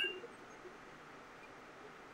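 Quiet room tone with a faint steady hiss. A brief soft sound fades out at the very start.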